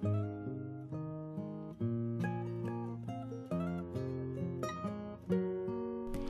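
Background music played on acoustic guitar, with plucked chords that change every second or so.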